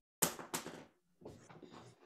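Two sudden knocks about a third of a second apart, each fading quickly, followed by fainter scattered rustling noise.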